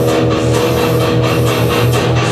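Live rock band playing an instrumental passage: loud, sustained electric guitar chords over a pulsing bass line and a steady beat, with no singing.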